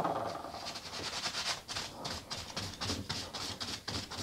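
Steel palette knife being wiped clean on tissue: a quiet run of short, irregular papery rubbing strokes.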